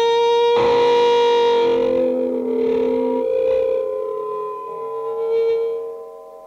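Electric guitar played through effects pedals in a free improvisation, holding long sustained notes with rich overtones. A new chord is struck about half a second in, and the sound thins and drops in level toward the end.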